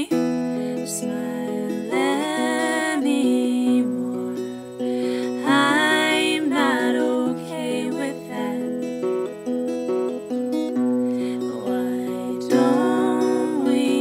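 A sunburst acoustic guitar plays steady held chords, and a woman sings held, wavering phrases over it, about two, six and thirteen seconds in.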